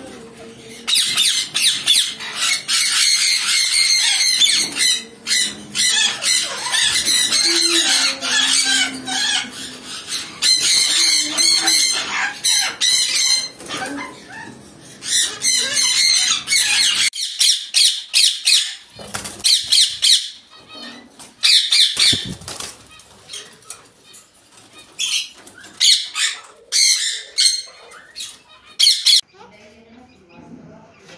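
Sun conures screeching, a dense run of shrill overlapping calls for about the first half. After that, separate sharp parrot squawks come with short gaps in between.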